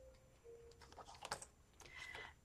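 Faint ticks and light rustles of paper planner pages and dividers being turned in a ring binder.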